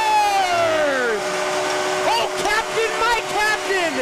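Arena goal horn sounding a long steady note that falls in pitch and dies away about a second in, marking a home-team goal. A crowd is cheering and whooping throughout.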